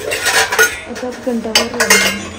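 Metal kitchen utensils clinking and scraping, with a quick run of sharp clinks about one and a half seconds in.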